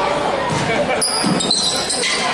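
A basketball bounced on a wooden gym floor, with a thud about a second in, over voices echoing in a large hall. Brief high squeaks come in the second half.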